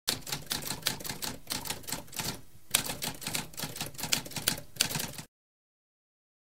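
Typewriter keys clacking in a rapid run of strikes, with a short pause about halfway through. The typing stops abruptly a little after five seconds.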